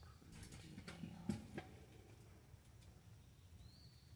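Near silence with a few faint sharp clicks in the first second and a half, the sharpest about a second and a quarter in, and a brief faint high chirp near the end.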